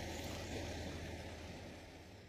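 Steady outdoor background noise, a low rumble with a faint hiss, fading out gradually.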